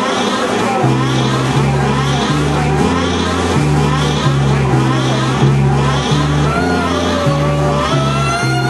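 Loud, dense live noise-rock improvisation by a band with saxophones, electronic effects, bass and drums. A low bass line with a repeated pulsing pattern comes in about a second in, under wavering, sliding horn lines and a noisy, swirling effects haze.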